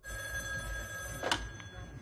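A telephone ringing in the film's soundtrack, with a sharp click about a second and a quarter in; the ring stops near the end, just before the call is answered.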